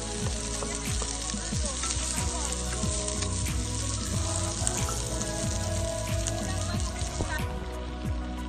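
Sliced shallots and garlic sizzling in hot oil in a pan on a portable gas stove, stirred with a wooden spatula. The sizzling cuts off about seven seconds in.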